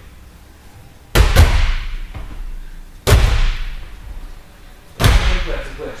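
Loud heavy thuds echoing in a large hall, three of them about two seconds apart, the first one doubled.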